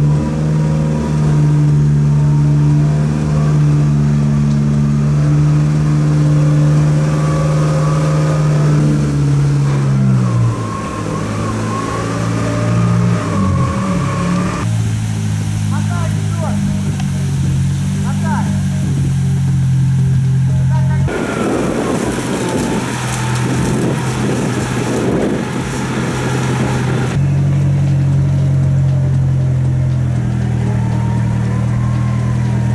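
Suzuki Samurai off-road 4x4's engine running steadily under load while it is winched and driven through a boggy riverbed, its pitch stepping up and down a few times. About two-thirds through comes a rougher, noisier stretch.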